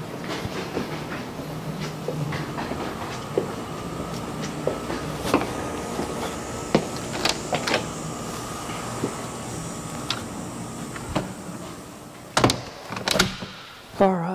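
Steady outdoor background hum with scattered light clicks, then an exterior house door opening and shutting near the end, heard as two sharp knocks about half a second apart.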